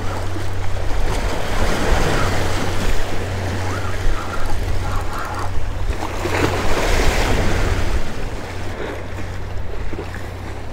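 Small waves washing and splashing against rocks, with wind on the microphone; the sound eases a little near the end.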